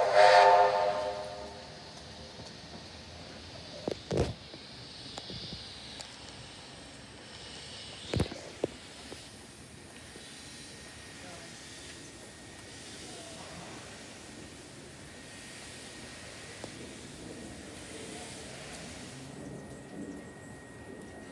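Steam locomotive 2705's whistle, several tones sounding together, cutting off about a second in. It is followed by a steady hiss of steam from the engine, with two short knocks about four and eight seconds in.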